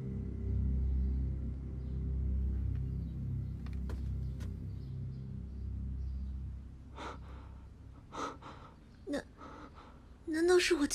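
A low, dark music score with sustained deep tones fades out over the first six seconds or so. Then come a few short, sharp gasping breaths, about one a second, near the end.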